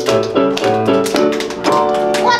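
Piano music: a lively tune of struck notes and chords, about three to four notes a second.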